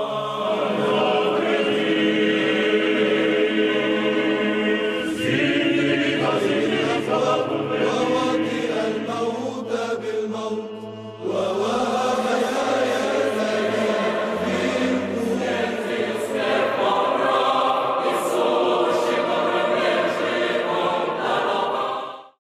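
Orthodox church chant sung by a choir over a steady held low note, with a short break about halfway through before the singing resumes.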